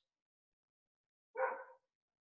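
One short, pitched vocal sound, like a single yelp or bark, about one and a half seconds in, over otherwise dead-silent, gated video-call audio.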